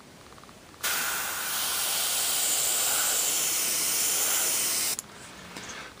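Badger Sotar 20/20 airbrush spraying paint: a steady hiss of air that starts about a second in and stops sharply about four seconds later. The needle is opened about three quarters of the way, which gives a wider spray line.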